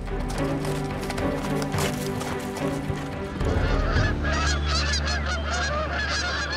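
Sustained low music notes, then from about halfway a flock of wild geese calling in flight: many overlapping honks over a steady low hum.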